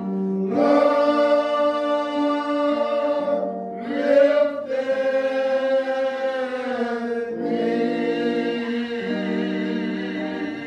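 A slow gospel hymn sung with long held notes over steady, sustained accompaniment chords.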